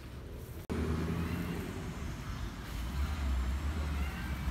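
Low engine rumble of a motor vehicle that comes in abruptly less than a second in, over a quieter outdoor background.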